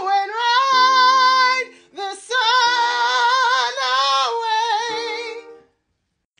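A woman singing a high musical theatre phrase, pushed hard with wide vowels and too much weight carried up into the high notes: a deliberate demonstration of the strained way of singing it. Two phrases with a short breath between, the held notes wavering with vibrato.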